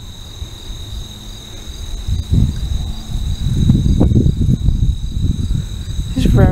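Crickets singing steadily in a meadow, a high, even trill with a faint regular pulse. Low gusty rumbling of wind on the microphone grows louder from about the middle and becomes the loudest sound.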